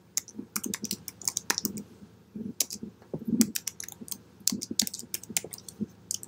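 Typing on a computer keyboard: irregular keystroke clicks, several a second, with short pauses between bursts.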